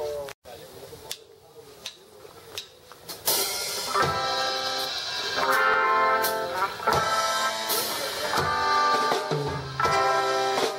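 A band with electric guitars and a drum kit rehearsing. After a quieter stretch with a few scattered taps, the full band comes in loud about three seconds in, with sustained guitar chords over drums.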